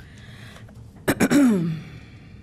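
A person clears their throat once, about a second in: a sharp rasp that ends in a short voiced sound falling in pitch.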